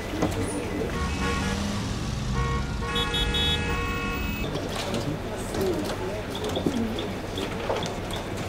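City street traffic heard from inside an office through its window: a steady low rumble of passing cars, with a horn sounding for about three seconds near the middle.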